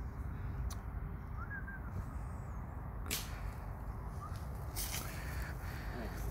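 Steady low outdoor rumble in woodland, with a single short bird chirp about a second and a half in and a fainter one later. There are two sharp clicks, around the middle and near the end.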